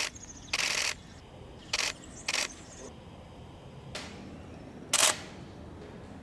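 About six short, sharp bursts of noise at irregular intervals, the longest about a third of a second and the loudest about five seconds in, over a low steady background.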